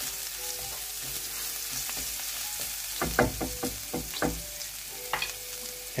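Garlic sizzling steadily in hot oil in a non-stick frying pan, with a wooden spoon stirring and knocking against the pan in a quick cluster of strokes about halfway through.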